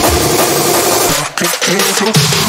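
Happy hardcore dance music at a break in the beat: the kick drum and bass drop out, leaving the upper synth and effects layers. There is a brief dip about a second and a quarter in.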